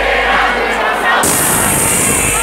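Concert crowd noise mixed with music from the PA system, loud and steady; a little past halfway a steady high hiss comes in on top.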